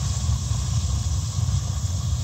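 A steam boiler's row of atmospheric gas burners firing on natural gas fed through small drilled orifices: a steady low rumble of flame with a faint hiss over it.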